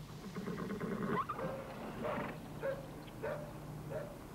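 An animal calling, with a rising cry about a second in and then a series of short, pitched calls at roughly half-second intervals.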